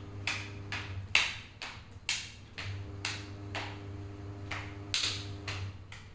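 A child doing jumping jacks with an overhead clap: sharp hand claps alternating with bare feet landing on a stone floor, about two sounds a second, over a steady low hum.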